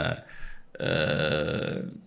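A man's speech trails off. After a short pause, a single drawn-out vocal sound is held at a steady pitch for about a second.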